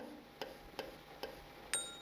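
About four faint, sharp taps of a stylus on an interactive display screen as numerals are written stroke by stroke; the last tap, near the end, is a little louder and trails a brief faint high ring.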